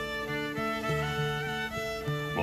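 Background music: a fiddle playing a slow melody of held notes that step from pitch to pitch.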